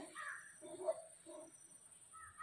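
Faint cawing of crows: a few short calls.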